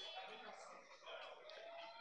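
Near silence in the commentary room: faint room tone with faint background voices.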